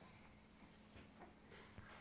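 Near silence: room tone with a faint steady hum and a few faint soft rustles of movement on a bed.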